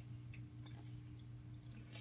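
Quiet room tone: a steady low hum with a few faint ticks as a hand slides over the paper pages of a hardcover picture book.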